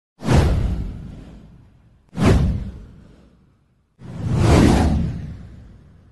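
Three whoosh transition sound effects for a news intro title card. The first two hit sharply and fade over about a second and a half; the third swells up more slowly, peaks, then fades out.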